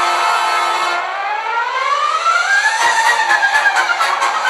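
A siren-like wailing tone that rises in pitch over about two seconds and then wavers, over sustained held tones, with a rapid ticking joining near the end.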